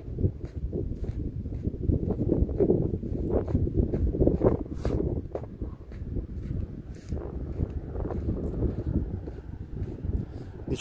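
Wind buffeting the phone's microphone in a steady low rumble, with soft footsteps in dry sand about twice a second as the person walks.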